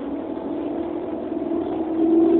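Steady hum of a passenger vehicle's drive heard from inside its cabin, its pitch rising slightly and getting louder near the end as it picks up speed.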